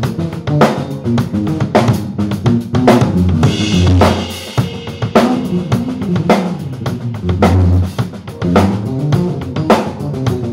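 Live band instrumental passage: an electric bass guitar plays a moving melodic line over a drum kit groove of kick, snare and rimshots. The bass holds a long low note twice, about three and a half seconds in and again near seven and a half seconds.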